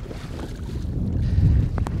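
Wind buffeting the microphone over choppy lake water, a steady low rumble, while a hooked fish splashes at the surface beside the boat. A couple of short sharp clicks come near the end.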